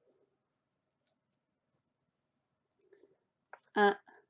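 A few faint ticks and then one sharper click of a small plastic counter being set down on a laminated card on a wooden table; the rest is near silence.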